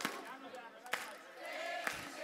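Concert crowd singing and calling faintly, with the band silent, while the audience claps in time, about one clap a second.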